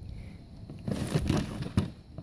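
Rustling and handling noise as plastic toy horses are moved about in grass close to the phone, starting about a second in, with a sharp click near the end.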